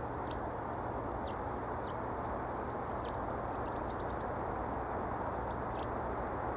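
Sparrows chirping: short, high chirps scattered through, with a quick run of about five about two-thirds through, over a steady low background hiss.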